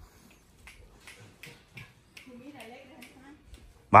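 Faint footsteps, with a brief, distant, wavering voice a little past halfway.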